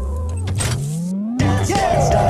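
Cartoon electric power-up sound effect: a low hum that rises steadily in pitch for about a second and a half as the sparking machine charges, then cuts off abruptly and loud dance music starts.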